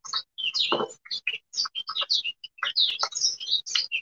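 Small birds chirping: many short, high chirps following one another in quick succession.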